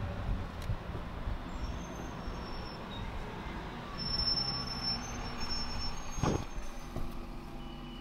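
Street traffic heard from an upstairs window: a low, steady rumble of engines, with a double-decker bus running past below. There is a faint high-pitched squeal in the middle and a single sharp knock about six seconds in.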